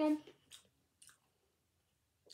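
A woman's voice ends a spoken word right at the start. After it comes near quiet broken only by two faint short clicks.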